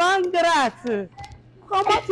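Speech: a woman talking animatedly with a laugh, with a short lull about a second in before talking resumes.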